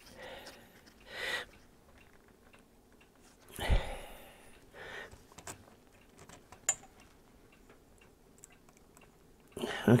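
Alligator-clip test leads being handled and clipped onto a small circuit board on a bench: a few short rustles and small clicks, with a soft knock about three and a half seconds in and a sharp click a few seconds later.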